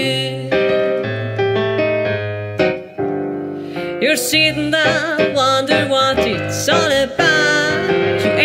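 Digital piano playing sustained chords over a steady bass line; about four seconds in, a singing voice with vibrato comes in over the piano.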